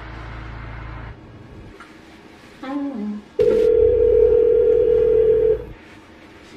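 A steady telephone tone sounds once for about two and a half seconds, starting suddenly past the middle and stopping before the end, over a low rumble. Before it there is a short falling tone, and at the start a low rumble that fades out about a second in.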